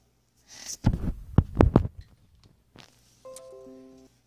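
A few low, heavy thumps close together, followed near the end by a short held chord of several steady electronic tones.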